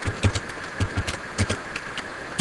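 Computer keyboard keys clicking in an uneven run of about ten keystrokes as a command is typed, over a steady background hum.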